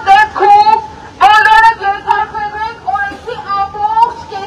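A woman shouting through a handheld megaphone in short, loud, high-pitched phrases, with a brief pause about a second in.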